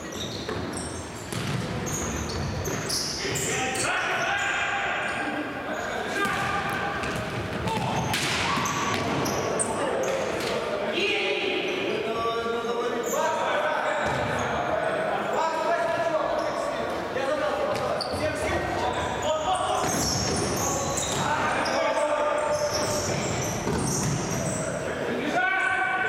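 Futsal game in a large sports hall: players calling and shouting to each other, with the thuds of the ball being kicked and bouncing on the hard court.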